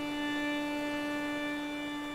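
A violin holding one long, steady note in a slow solo melody.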